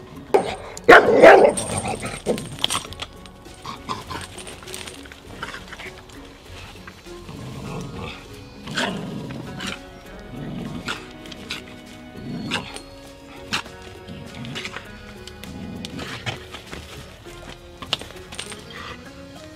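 American bulldog barking as it bites and tugs at a stick held by its handler, loudest about a second in, over background music.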